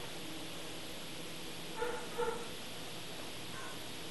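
Rhodesian Ridgeback puppy giving two short high cries close together about two seconds in, and a fainter one near the end, over a steady hiss.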